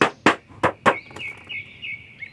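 Fingers tapping on the clear plastic window of a toy box: about four sharp taps in the first second, then fainter ones. A bird chirps repeatedly in the background during the second half.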